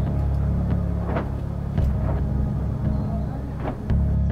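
A steady low rumble or drone at a few fixed low pitches, with a few faint short knocks or distant voices over it.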